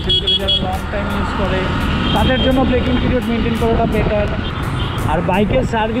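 A man's voice talking over the steady running and road noise of a Yamaha MT-15 motorcycle being ridden.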